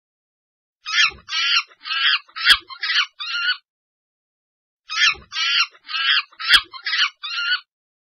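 A recorded animal call, given as the gorilla's sound, played twice: each time a run of about six high, pitched calls over some three seconds, with a sharp click partway through.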